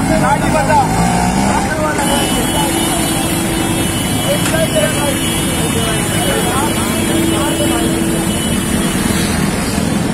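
A motor vehicle's engine running steadily amid street traffic noise, with voices of people nearby.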